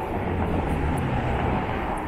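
Steady low rumble of passing vehicles in a city street.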